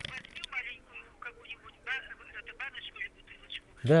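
Faint, thin voice of the other party on a phone call, leaking from the handset's earpiece in short speech fragments, with a low steady hum underneath.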